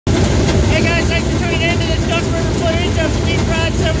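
Race car engines running, a steady low rumble, under a man's voice.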